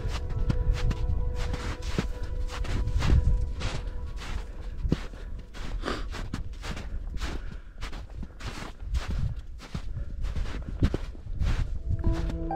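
Footsteps on snow, an irregular run of steps several a second, over a low rumble.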